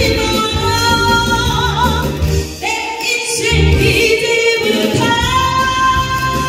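A woman singing into a microphone over amplified backing music, holding long notes that end in a wavering vibrato; a new phrase starts partway through, and another long note begins near the end.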